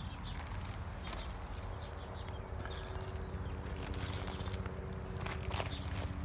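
Footsteps crunching on loose lava rock, a handful of scattered steps, over a steady low rumble.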